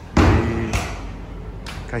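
A loud thud just after the start, heavy in the bass, fading over about half a second. A man's voice begins near the end.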